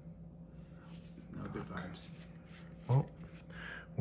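Pokémon trading cards being handled and sorted on a table: soft rustling with small clicks and slaps. There is a brief voice-like sound a little before three seconds in.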